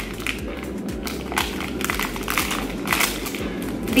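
Plastic snack-bar wrapper crinkling and crackling in the hands as it is peeled open, with many small crackles throughout.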